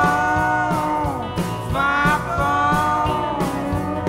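Live country band playing an instrumental passage: a lead instrument holds long notes, each about a second, that slide in pitch at their ends, over guitars, bass and drums.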